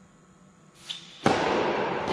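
Tennis ball struck with a racket, a small sharp crack just under a second in, then a much louder thud about a quarter second later, followed by a dense rush of noise that fades slowly over the next seconds.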